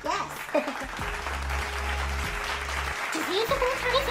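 Steady crowd applause over background music with a sustained bass tone, with a few brief voices mixed in.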